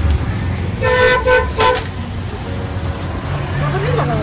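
Vehicle horn tooting three short blasts in quick succession about a second in, over a steady rumble of traffic.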